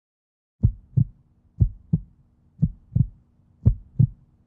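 Heartbeat sound effect: four lub-dub double thumps, about one a second, over a faint steady low hum.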